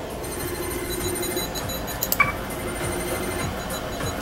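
Computer interface sound effects: a steady electronic hum with thin high whines, and a short beep about two seconds in, typical of the Star Trek LCARS control-panel sounds.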